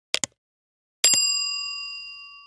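A short, sharp double click, then about a second in a single bright bell ding that rings and fades away over about a second and a half. These are the sound effects of a subscribe-button and notification-bell animation.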